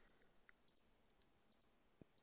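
Near silence broken by about three faint computer mouse clicks.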